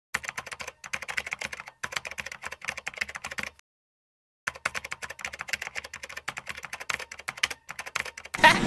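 Rapid keyboard typing, a quick run of keystroke clicks. It pauses briefly twice, then goes silent for about a second near the middle before the typing starts again.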